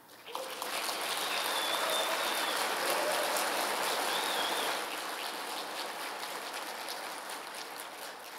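Audience applauding, made up of many overlapping hand claps. It starts right away, holds steady for about five seconds, then slowly dies away.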